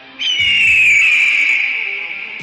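A bird-of-prey screech sound effect. It starts sharply about a quarter second in, falls in pitch and slowly fades.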